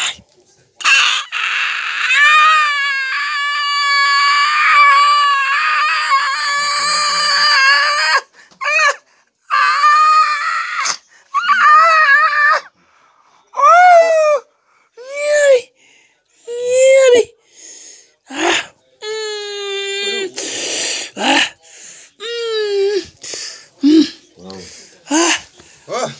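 An injured person wailing and crying out in pain while their wounds are cleaned and dressed. One long, wavering wail runs from about a second in to about eight seconds, followed by a string of shorter cries.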